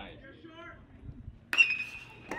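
Faint crowd voices, then about one and a half seconds in a metal baseball bat hits a pitched ball with a sharp ping that rings briefly.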